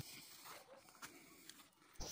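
Near silence, with a few faint, short high-pitched chirps.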